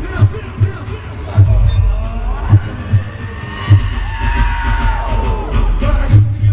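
Live hip-hop music played loud through an arena sound system and heard from inside the crowd: heavy bass thumps repeat under the track, with a held, sliding melodic line over them in the middle.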